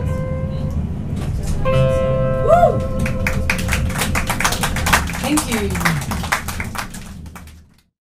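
Acoustic and electric guitars ring out the final held chord of a blues song, with a bent note about two and a half seconds in; then irregular hand clapping breaks out over the fading chord, and everything fades out just before the end.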